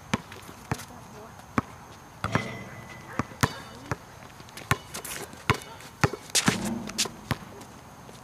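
Basketball bouncing on a hard outdoor court: a string of sharp, unevenly spaced smacks as the ball is dribbled and caught.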